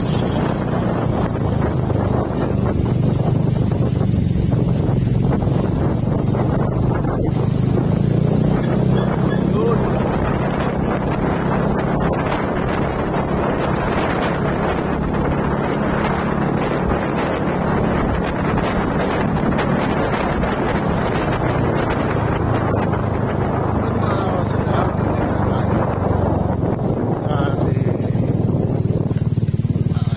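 A motorcycle engine running steadily under way, with wind noise on the microphone.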